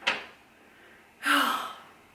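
A woman's breathy gasp of disbelief about a second in, after a short breathy exhale at the start.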